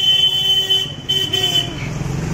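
A vehicle horn honking twice in street traffic: a long steady blast of about a second, a short break, then a second blast of under a second.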